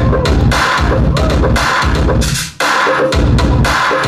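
DJ-played dance music on a sound system: a heavy beat of bass drum and snare with cymbals. It cuts out briefly about two and a half seconds in and comes straight back.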